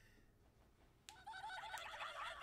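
Near silence for about a second, then a high-pitched voice in quick, pulsing bursts, like a short giggle.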